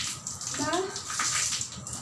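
Water running from a garden hose and splashing onto a tiled floor, a steady hiss.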